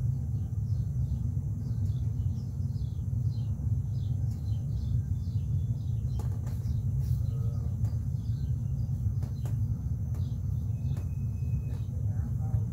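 Small birds chirping repeatedly, short falling chirps a few times a second, over a steady low rumble.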